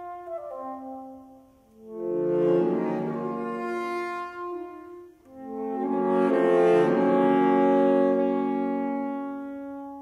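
Saxophone quartet of soprano, alto, tenor and baritone saxophones playing long held chords. The chords fade almost to nothing twice, then swell back in about two and five seconds in; the second swell is the loudest and dies away near the end.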